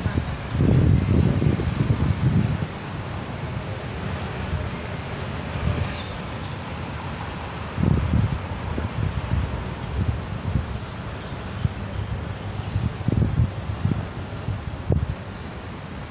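Wind buffeting a phone's microphone outdoors, a steady hiss broken by irregular low rumbling gusts, the strongest about a second in, about halfway through and again near the end.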